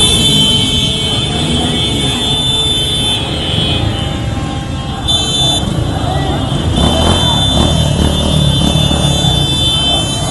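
Dense street noise of many motorcycle engines running amid the voices of a large crowd.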